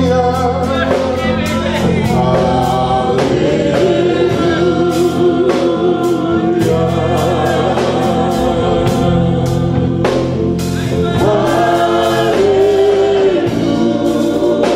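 Women's voices singing a gospel worship song through microphones, with long held notes that waver in vibrato, over a steady sustained musical backing.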